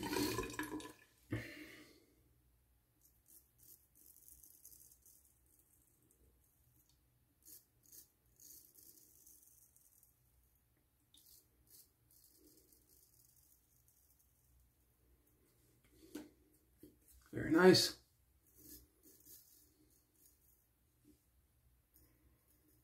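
Running tap water dying away in the first second, then a straight razor scraping through lathered stubble on the cheek in short, faint strokes. A brief loud sound about 17 seconds in.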